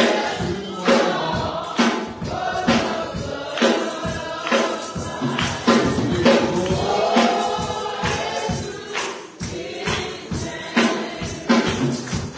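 A slow gospel hymn sung by several voices, with a tambourine struck on each beat, about one beat a second.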